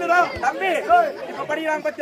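Men's voices calling out loudly over one another, in overlapping shouts.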